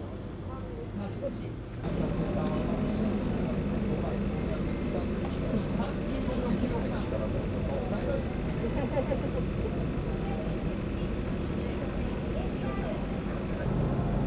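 Voices over a steady low mechanical drone, which both get louder about two seconds in and then hold steady.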